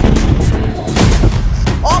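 An explosion: a sudden loud blast at the start, then a long low rumble with a few sharper bangs about a second in. A short shout of "grenade" comes near the end.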